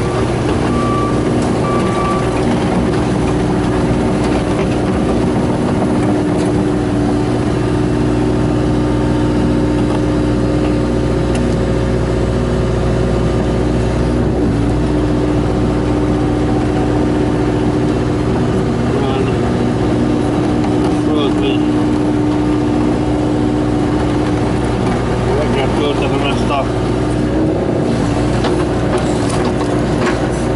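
Hitachi excavator's engine running steadily, heard from inside the cab while the arm and bucket dig soil, its note shifting slightly about halfway through.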